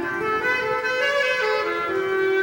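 Bass clarinet playing a legato melody in its upper register. It climbs in steps, then steps back down and holds a longer note near the end.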